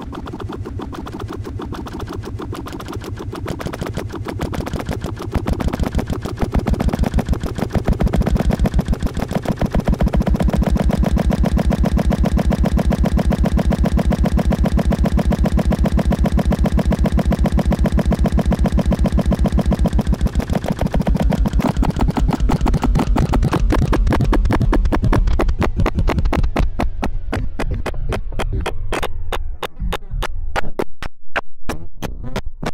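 Electronic soundtrack of rapid, even throbbing pulses over a low drone, growing louder over the first ten seconds and holding there.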